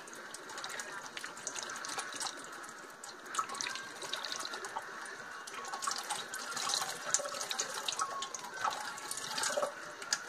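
Water running and splashing steadily in a stainless steel kitchen sink.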